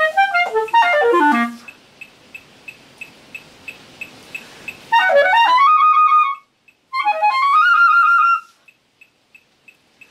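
Clarinet practising runs: quick descending runs, then after a pause of about three seconds two rising runs, each ending on a held high note. A faint ticking, about three a second, sounds in the pauses.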